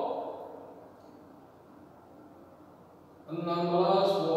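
A man's voice trails off, leaving a quiet, steady room hum for about two seconds. A little past three seconds in, his voice starts again, drawn out.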